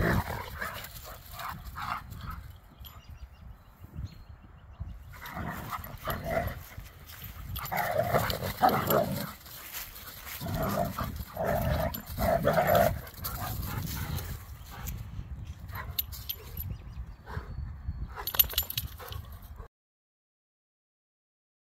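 Two dogs play-fighting and chasing each other, with dog vocalisations throughout that come in louder bouts through the middle.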